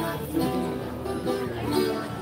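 A plucked string instrument playing a tune with steady held notes, and a voice cutting in near the end.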